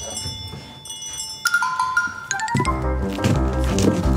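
Background music: held bell-like notes, then a quick run of bright notes about one and a half seconds in. Bass and a steady beat come in about halfway through.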